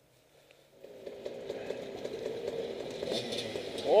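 A vehicle engine running steady and slowly getting louder. It comes in about a second in, after near silence.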